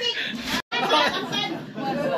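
People talking at once: overlapping conversational chatter in a room. There is a brief total break in the sound just over half a second in.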